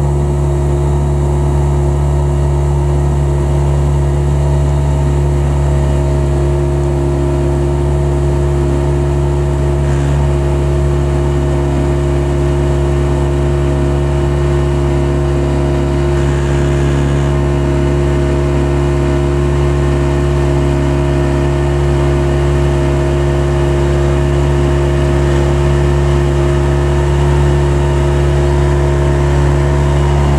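Outboard motor of a small aluminium launch running steadily at an even, unchanging pitch.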